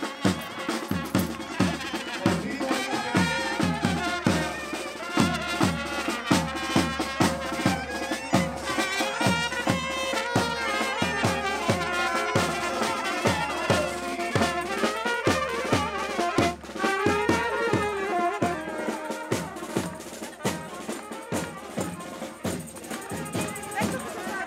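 Marching street band playing a lively traditional tune: saxophone, trumpets and clarinet carry the melody over a steady drum beat of about two strokes a second.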